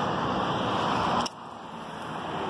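Steady rush of road traffic passing nearby, with no distinct events. Just over a second in it drops suddenly to a quieter level.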